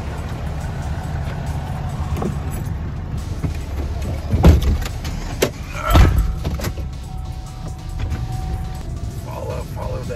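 Steady low rumble of a pickup truck heard from inside its cab, broken by two loud thumps about four and a half and six seconds in.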